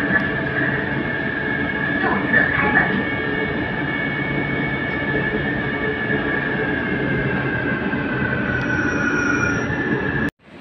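Inside a moving Taipei MRT train car: the steady running noise of the train on its rails, with a high whine that slowly drops in pitch near the end.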